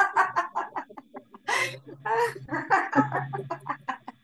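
A woman laughing in a rapid staccato run of short 'ha' pulses, with a couple of longer open-mouthed laughs: deliberate laughter-yoga laughter done as an exercise while she twists her body.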